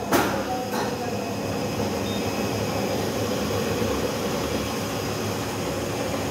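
Wohlenberg 115 paper cutting guillotine running with a steady machine hum, with a sharp click just after the start and a softer one a little under a second in.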